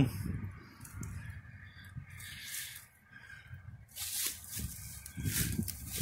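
Low, steady rumble of interstate traffic from the lanes on either side, with a few brief hissing swells over it.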